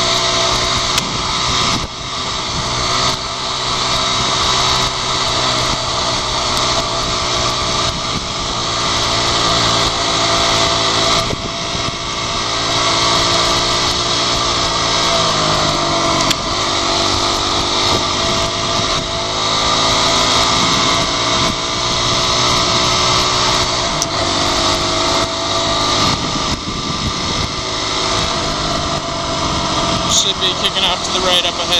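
Dirt bike engine running under way, its pitch falling as the bike slows about halfway through and climbing again as it accelerates.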